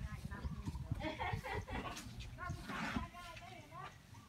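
Voices talking at a distance, indistinct, with irregular low rumbling from wind on the microphone.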